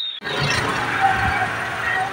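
A steady rushing noise of a motor vehicle, starting abruptly just after the start.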